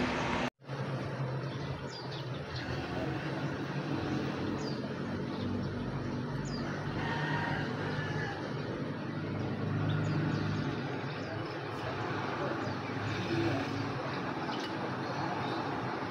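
Steady low background rumble with a few faint, high bird chirps scattered through it, after a brief dropout about half a second in.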